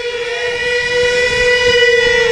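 A man's voice holding one long sung note at a steady pitch, amplified through a stage microphone.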